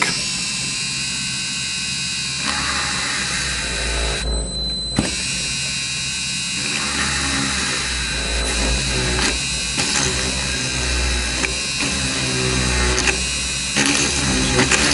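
Pen-style Dremel rotary tool running steadily with a high whine as its bit drills small window holes into a plastic model hull. It cuts out briefly about four seconds in, then starts again.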